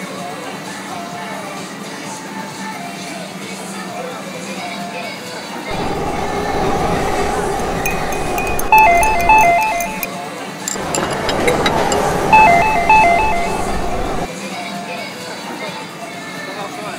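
Recorded street and station ambience played back by a sound-map app over background music: a steady bed of city noise, then two louder stretches of crowd and traffic noise with clicks. In each stretch an electronic chime repeats a high-high, low-low pattern of short beeps.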